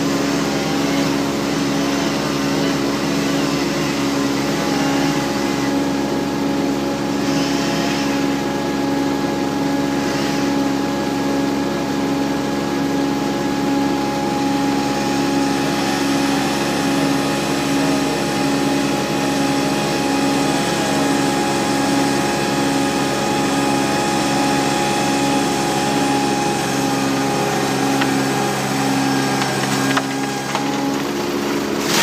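The diesel engine of an AL20DX compact loader running steadily, heard from its seat. A faint chainsaw cutting at the base of the tree may lie underneath it.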